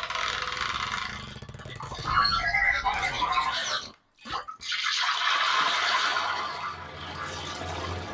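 Rushing, hissy sound effects of a video's logo intro, cutting out briefly about four seconds in and then starting again.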